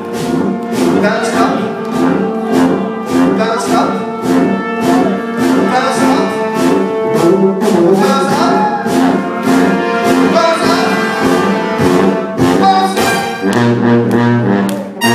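Live brass band playing: trumpets, trombones and sousaphone over drums keeping a steady, even beat. A low bass note from the sousaphone comes in strongly near the end.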